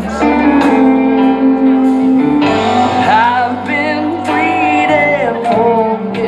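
Live band music from keyboard, electric bass and electric guitar, holding sustained chords. About two and a half seconds in, a wavering lead melody enters over the chords, with a man singing at the microphone.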